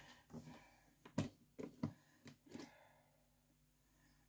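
A few faint, short clicks and knocks as the Thermomix lid is unlocked and lifted off the mixing bowl at the end of a cooking cycle.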